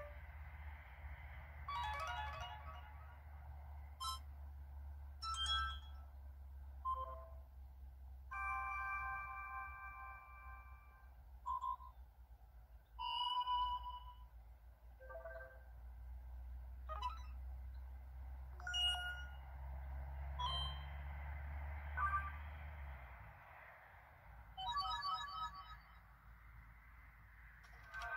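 A phone's small speaker plays its preset notification tones one after another: about a dozen short chimes, beeps and jingles, each about a second long, with one held chord of a few seconds near the middle. A steady low rumble runs under them and stops near the end.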